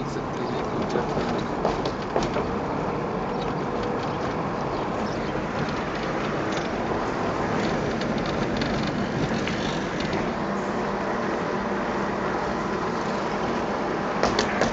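Road and engine noise of a moving car heard from inside the car, steady throughout, with a few faint clicks and rattles.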